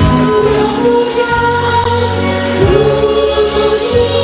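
Choral singing with music, in long held notes, with the harmony changing about two and a half seconds in and again near the end.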